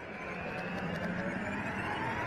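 Lead-in of an intro sting: a noisy swell that fades in from silence and builds steadily toward a loud hit.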